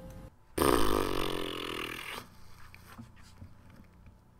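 A man's long, loud, rough-voiced sigh of about a second and a half, heaved out just after the music stops, then faint rustling and small clicks.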